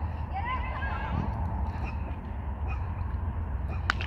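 Wind buffeting the microphone, a steady low rumble, with a few high, gliding calls about half a second to a second in and a sharp click just before the end.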